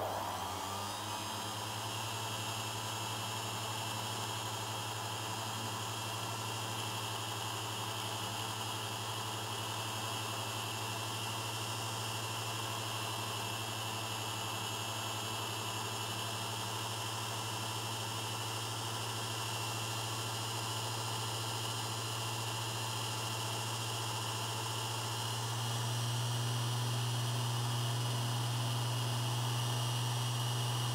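Small metalworking lathe running steadily, with abrasive paper rubbing on a model-diesel piston as it spins, polishing it down to a tight fit in its cylinder: a steady hum with a hiss over it. The hum grows louder about 25 seconds in.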